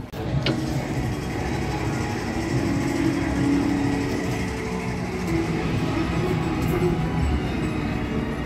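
A steady mechanical rattle from an amusement-ride car running on its narrow track, with music playing over it.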